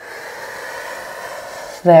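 A woman's long, steady audible exhale lasting nearly two seconds, a yoga breath released with the downward twist of the movement. Speech starts just at the end.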